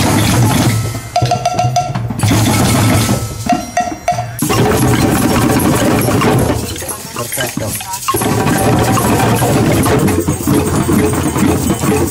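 A drum circle: many djembes and other hand drums and percussion played together by a large group in a continuous, dense groove.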